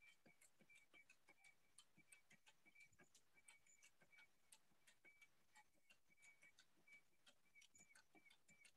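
Near silence, with faint irregular ticks and short high blips, several a second.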